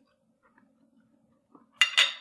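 Metal fork clinking against a plate twice near the end, two sharp ringing strikes a fraction of a second apart.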